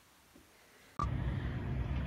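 Near silence for about the first second, then a short beep and a steady low rumble of outdoor background noise.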